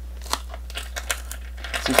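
A few short clicks and crackles of a torn-off rubber boot heel and sole being handled against the boot, the sharpest about a third of a second in, over a steady low hum.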